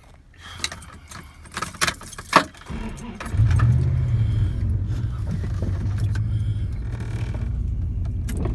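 Keys rattling with a few sharp clicks, then a car engine starts about three seconds in and runs steadily.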